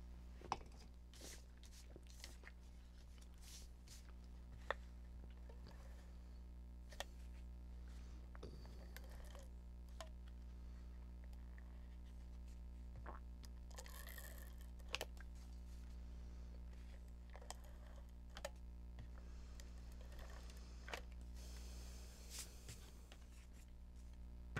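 Faint clicks and taps of paper and craft tools being handled over a steady low hum, with short rasping runs of a tape runner laying adhesive strips on card around the middle and again near the end.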